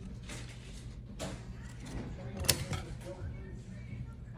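Handling sounds of scissors being brought up to a plant stem: a few soft clicks and rustles, with one sharp click about two and a half seconds in.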